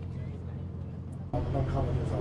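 A sightseeing bus running, a steady low rumble from its engine and the road; about a second and a half in it abruptly becomes louder, with a voice speaking over it.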